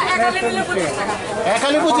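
Several people talking at once, voices overlapping in indistinct chatter.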